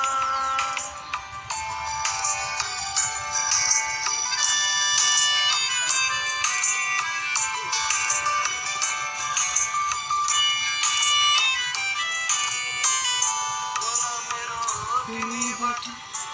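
Instrumental break in the song's backing music: a quick melody of many short, high notes, with no singing.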